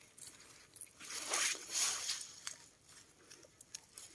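Soft rustling of tomato plant leaves and stems being pushed aside and handled while ripe cherry tomatoes are picked, swelling twice and followed by a few light clicks.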